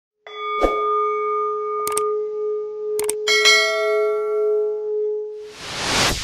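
Logo-intro sound design: a struck bell rings and hangs on for about five seconds, cut by a few sharp clicks, with a second, brighter chime joining about three and a half seconds in. A rising whoosh swells near the end.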